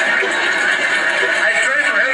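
Large outdoor crowd, many voices talking and shouting at once in a loud, steady din.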